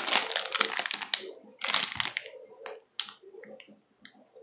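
Crinkly plastic lollipop bag crackling as it is handled: a dense run of sharp, irregular crackles for about two seconds, thinning to a few scattered crackles after.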